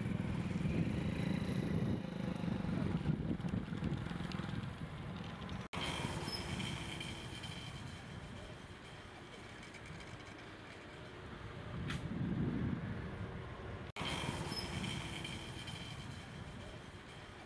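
Road traffic: vehicles rumbling past, loudest in the first few seconds and swelling again about twelve seconds in as another passes.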